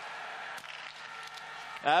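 Steady background crowd and venue ambience at a biathlon shooting range, with a few faint clicks early on. The commentator's voice comes in right at the end.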